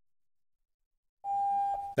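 About a second of silence, then a steady mid-pitched electronic beep lasting about half a second that fades off.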